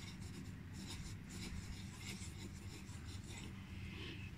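Pencil scratching on a paper worksheet as a child draws, in short, faint strokes.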